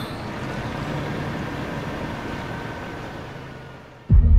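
A steady rushing noise with a faint low hum, fading away gradually.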